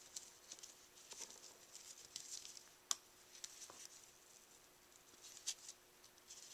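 Faint rustling and light scratching of a satin ribbon bow and cardstock as fingers shape the bow, in short scattered bursts, with one sharp tick about three seconds in.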